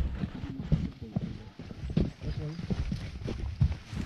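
Irregular knocks and footfalls of people walking through a trench, with faint voices in the background.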